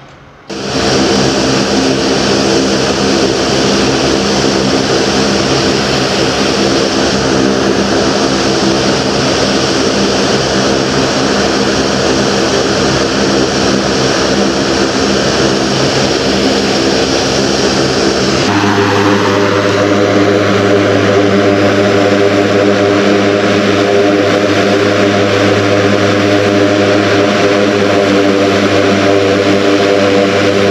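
MQ-9 Reaper's turboprop engine running steadily with a whine and propeller drone. About two-thirds of the way through, the sound changes abruptly and its pitch rises briefly before settling.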